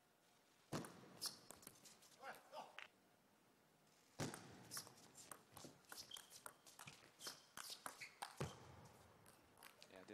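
Table tennis ball being struck back and forth: sharp clicks of the celluloid ball off rackets and the table, a few about a second in, then a fast rally of clicks from about four seconds in, with footwork scuffing and squeaking on the court floor.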